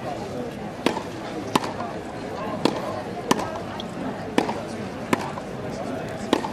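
Tennis ball being hit back and forth in a practice rally on a grass court: about six sharp pops of racket strikes and bounces, roughly one a second.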